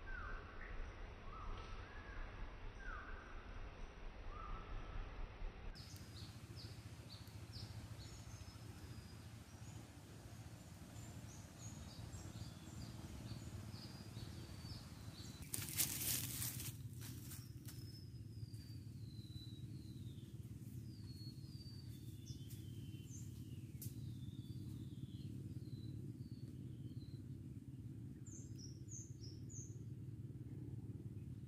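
Wild birds calling in trees: a run of short falling calls at first, then many quick high chirps. About halfway through there is a brief, loud rush of noise.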